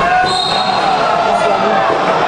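Basketball game in a gym: the ball bouncing on the hardwood floor amid play, with people's voices in the hall.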